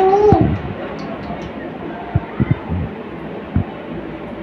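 A short high-pitched vocal cry at the very start that bends up and then drops, followed by a few soft low thumps in the second half.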